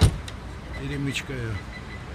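A single sharp thump right at the start, then a short burst of a person's voice about a second in, over steady street background.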